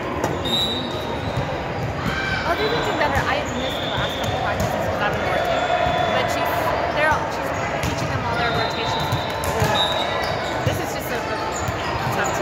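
Indoor volleyball gym ambience: scattered ball bounces and hits, short high sneaker squeaks on the hardwood, and players and spectators talking and calling out, all echoing in a large hall.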